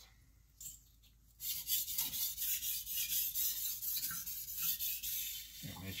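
Steel knife blade stroked back and forth on a wetted 1000-grit Naniwa Chosera whetstone: a steady, rhythmic rasping that starts about a second and a half in. This is the 1000-grit stage of sharpening at a 15-degree angle, working the edge until a burr forms.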